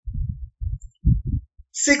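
Several low, muffled thumps in an irregular run over the first second and a half, then a pause.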